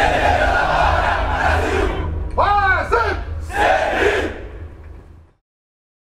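A body of soldiers shouting their unit motto in unison as a battle cry, 'Em defesa da pátria, Brasil!': one long shout, then two shorter ones, over a low rumble. The sound cuts off suddenly about five seconds in.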